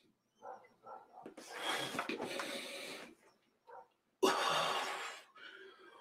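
A person draws a hit of smoke through a 14-inch glass steamroller pipe, a breathy rush lasting about two seconds, then breathes the smoke out in a stronger exhale about four seconds in.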